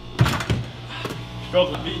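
Basketball hitting the plywood backboard and rim of a small wall-mounted hoop: two sharp thuds about a third of a second apart.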